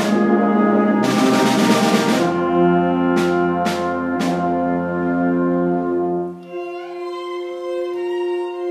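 A rehearsing ensemble with brass, trumpets and French horn among them, playing sustained chords under the conductor. Sharp percussive strikes sound about three times in the second half, and a noisy crash-like swell rises and fades between one and two seconds in. About six and a half seconds in the low parts drop out, leaving higher notes held.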